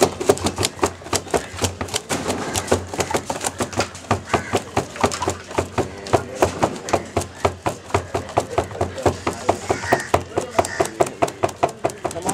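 Freshly slaughtered chickens thrashing in a plastic barrel, their wings beating against its sides in quick uneven knocks, several a second: the birds' death throes after the cut.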